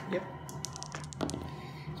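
A pair of dice thrown onto a cloth gaming mat: a quick run of small clicks as they tumble and knock together, starting about half a second in and over in under a second.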